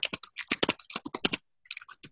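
Computer keyboard typing: a quick run of keystrokes, a short pause a little past halfway, then a few more keys near the end, as a terminal command is typed.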